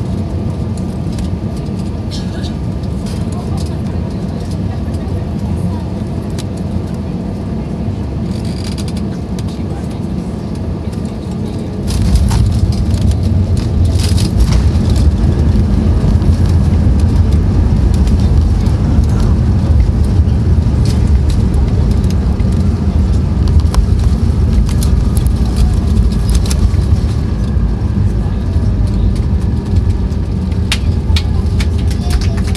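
Airbus A320 cabin noise through landing: a steady rush of airflow and engines, then about twelve seconds in a sudden, much louder low roar as the airliner rolls down the runway after touchdown under reverse thrust, easing a little near the end.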